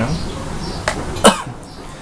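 A person coughing once, short and sudden, about a second in, just after a faint click.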